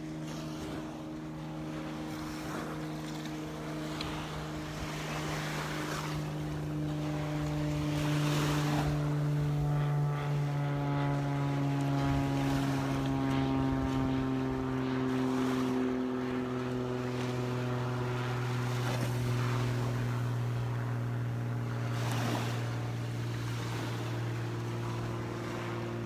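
A steady engine hum passing by, its pitch sliding slowly downward. It grows louder toward the middle and eases slightly near the end.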